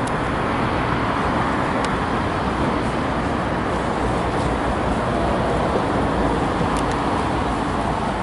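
Steady traffic noise from a busy city street, an even wash of passing cars with a couple of faint ticks.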